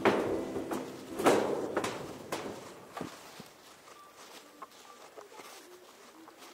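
Footsteps on a hard walkway. The first few steps are loud and the later ones fainter.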